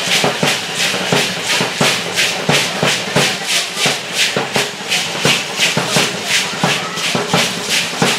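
Matachines dancers' hand rattles (sonajas) shaken together in a steady dance rhythm, about three strokes a second.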